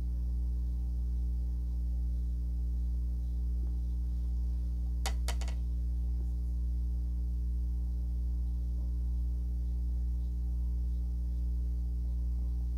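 Steady low electrical hum with a few faint clicks about five seconds in.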